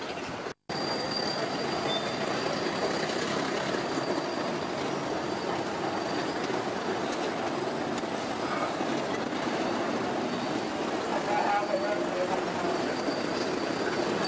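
Steady city street traffic noise from buses and a dense stream of bicycles passing, with a few short squeaks about twelve seconds in. The sound drops out completely for a moment about half a second in.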